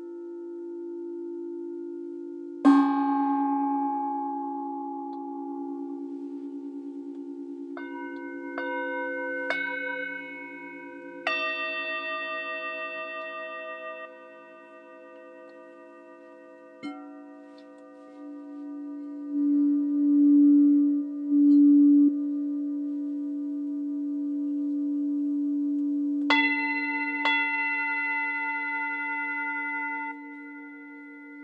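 Singing bowls struck with a soft mallet and left ringing over a steady low hum of overlapping tones. A bright strike comes about three seconds in, four higher strikes follow in quick succession from about eight to eleven seconds, and two more come near the end. Around twenty seconds a low tone swells loudly twice.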